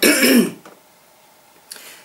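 A woman clearing her throat with one short cough into her fist, lasting about half a second.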